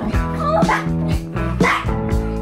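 A small Pomeranian–Spitz mix dog giving a few short, high yips and barks over steady background music.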